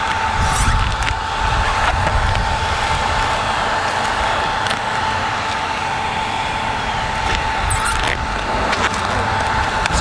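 Handheld blow dryer running steadily: a constant motor whine over rushing air, with a few short clicks as vinyl wrap is peeled off.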